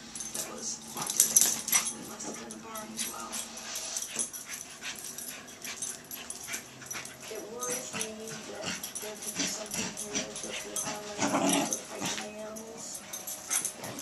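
Pembroke Welsh Corgi puppy making playful dog noises as it spins with a plush toy in its mouth, with many small clicks and rattles throughout and a louder stretch about three-quarters of the way in.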